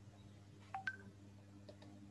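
Two short electronic beeps in quick succession, the second higher in pitch than the first, over a faint steady low hum.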